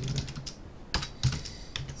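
Typing on a computer keyboard: a run of irregular key clicks, with a short pause about halfway through.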